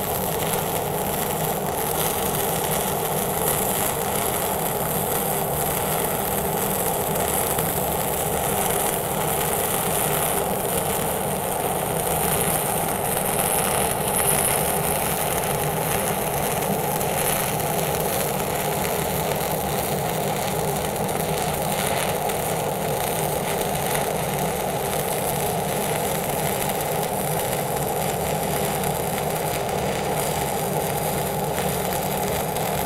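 Stick (SMAW) welding arc of a 1/8-inch E6010 electrode at about 85 amps, running a combined hot-and-fill pass uphill around a pipe joint. The arc noise is steady and unbroken throughout.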